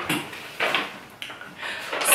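A sheet of printer paper rustling in a few short bursts as it is lowered and lifted in the hands.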